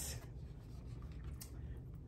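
Faint rubbing and rustling as a microwaved frozen-meal tray and its plastic cover are handled and opened, over a low steady hum, with one light click a little before the end.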